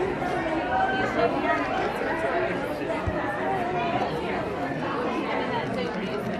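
Crowd chatter: many people talking at once, their voices overlapping with no clear words.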